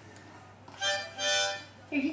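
Harmonica blown by a toddler, sounding two breathy chords in a row: a short one, then a slightly longer one.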